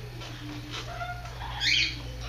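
African grey parrot vocalizing: a few short, soft whistled notes at different pitches, then a brief harsh squawk near the end.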